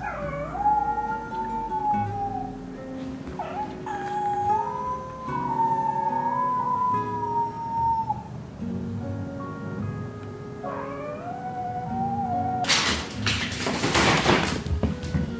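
A kitten's long, drawn-out mews, three of them, each dipping in pitch at the start and then held with a slight waver; the middle one lasts several seconds. It is calling out to the resident cat while trying to communicate. Background music plays underneath, and near the end there is a loud rustling burst of a fabric cat tunnel.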